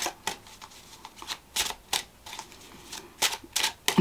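Tarot deck being shuffled and handled: a string of irregular sharp card snaps and rustles, bunched near the start and again in the last second.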